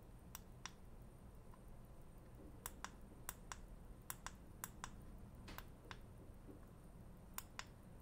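Faint, sharp clicks from small camera buttons being pressed, mostly in quick pairs, as a camera's menu is stepped through to set the white balance.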